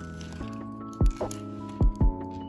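Background music: soft held chords with a deep kick drum beat, two kicks falling about a second in and again near the end.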